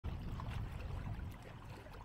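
Wind rumbling on the microphone at the lakeshore, with small waves lapping faintly at the water's edge; the rumble eases a little past halfway.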